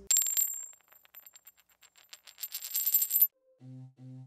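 A segment-transition sound effect: a high ringing tone over a burst of rapid clicks at the start, thinning out, then building again into a dense clatter that cuts off suddenly a little after three seconds in. Low musical notes begin near the end.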